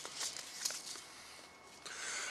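Faint rustling with a couple of light clicks as a packet of butter crunch lettuce seeds is handled and the seeds are tipped out into a hand.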